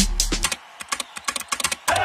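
Rapid, irregular clicking of keys being typed on a keyboard, heard during a break in electronic music that drops out about a quarter of the way in.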